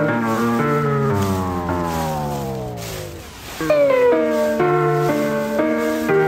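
Solo piano piece from MIDI, run through lo-fi tape effects. About half a second in, all the notes sag downward in pitch together and fade, like slowing tape, then the piano comes back in at normal pitch shortly before four seconds in.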